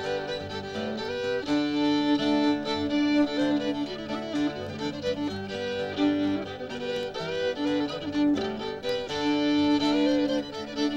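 Fiddle playing an old-time tune as an instrumental break between sung verses, with an acoustic guitar accompanying underneath.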